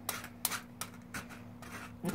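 A pocket-plane rasp scraping across a goat's hoof in several short strokes, shaving down and levelling the overgrown hoof wall.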